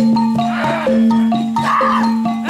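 Kuda kepang gamelan accompaniment: struck metallophone notes step through a repeating pattern over a steady low tone. Twice, a wailing cry swells and falls away over the music.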